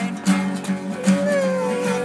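Two acoustic guitars strummed together in a steady rhythm.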